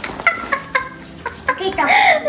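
A woman laughing in short, high-pitched pulses, about four a second, growing louder near the end.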